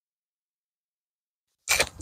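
Silence, then near the end a sudden loud scuffing rustle as a disc golfer throws a drive off a concrete tee pad, slipping as he throws.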